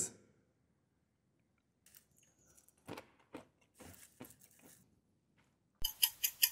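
Faint crunching of peanuts being chewed, a few short crunches about three to four seconds in, then a sharp click just before the end.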